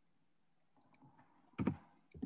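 Near silence, then a short click about a second and a half in, followed by a fainter click.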